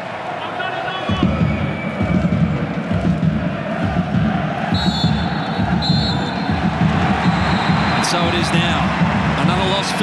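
Stadium crowd noise, with two short, high blasts of the referee's whistle about five and six seconds in, blowing for full time. A few sharp knocks follow near the end.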